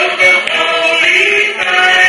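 A choir of voices singing long held notes over musical accompaniment.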